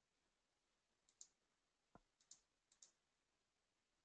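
Near silence with four faint, short clicks in the second half, from a computer mouse being clicked.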